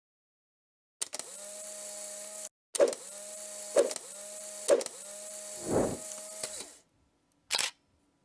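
Camera sound effects: a motorized whir runs, stops briefly, then resumes with three sharp shutter-like clicks about a second apart. A low whoosh swells near the end before the whir cuts off, followed by one last short click.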